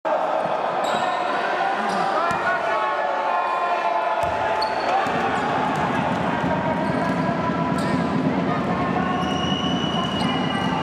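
Live basketball game sound in a gym hall: a ball bouncing on the hardwood and short, high sneaker squeaks over the steady, echoing chatter and shouts of players and spectators.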